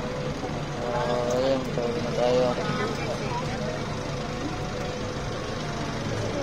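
Steady engine rumble heard from inside a moving passenger vehicle, with people's voices talking in the background, loudest from about one to two and a half seconds in.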